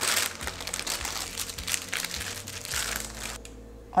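Clear plastic piping bag crinkling as hands squeeze and twist it, working firm icing down toward the nozzle. The crinkling is irregular and stops shortly before the end.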